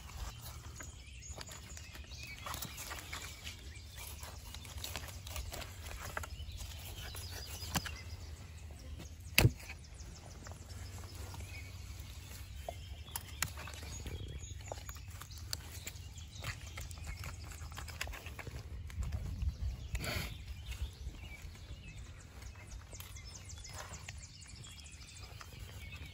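Fillet knife cutting the cheeks out of a walleye's head, with faint scattered clicks and scrapes of the blade against bone and the fillet board, and one sharp click about nine seconds in. A low steady rumble runs underneath.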